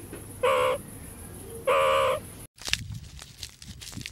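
Meerkat giving two short, high-pitched calls a little over a second apart, the second slightly longer. After a cut come faint scattered clicks.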